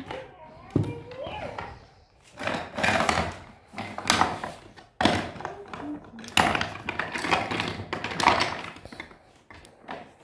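Toy pieces being handled and knocked together on a shelf: clattering with several sharp knocks.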